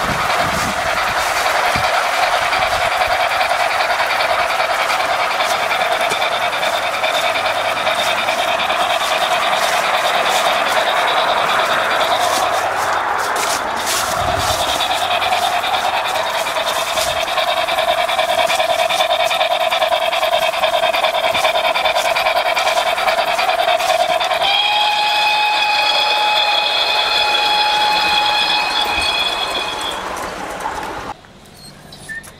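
O gauge model steam locomotive and coaches running along garden track: a steady high whine with rapid clicking from wheels over the rails. About five seconds before the end the whine steps up to a cleaner, higher tone.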